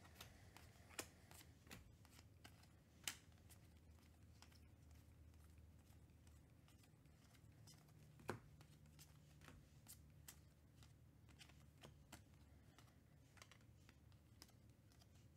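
Faint clicks and snaps of baseball trading cards being flicked and sorted by hand, with a few sharper snaps about one, three and eight seconds in, over a low steady hum.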